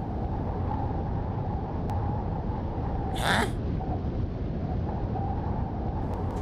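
A steady low rumbling background noise, with one short sharp sound about three seconds in.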